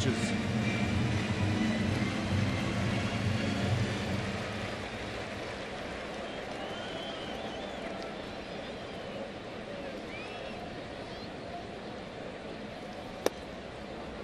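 Steady murmur of a large ballpark crowd, easing slightly after a few seconds. Near the end comes a single sharp pop of a pitched baseball smacking into the catcher's leather mitt.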